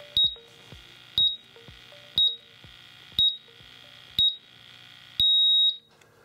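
A MultiRAE gas monitor's beeper sounds its power-off countdown while its button is held: five short high beeps about a second apart, then one longer beep as the instrument shuts down.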